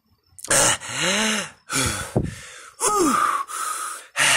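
Screaming rubber chickens being squeezed, giving three drawn-out squawks that rise and fall in pitch, each with a breathy, wheezing hiss of air.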